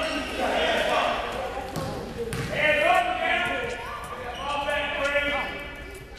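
A basketball bouncing on a gym court amid shouting voices, echoing in a large gymnasium. The shouts are held and are loudest around three seconds in.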